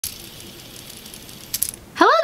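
A fidget spinner with gears spinning in the hand: a steady whir with light metallic rattling, and a few clicks about a second and a half in.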